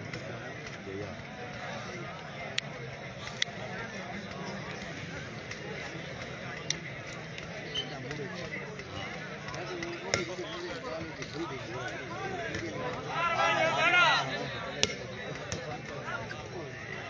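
Large crowd talking all around, with a few sharp clicks. Near the end one man lets out a loud, drawn-out shout.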